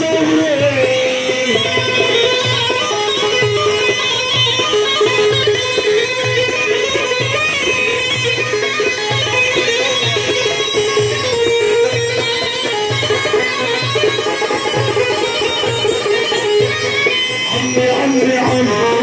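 Live band music: a plucked string instrument plays a melody over a steady low drum beat.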